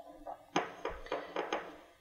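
A small glaze paintbrush making a quick run of about five soft, short strokes in about a second, quiet and light.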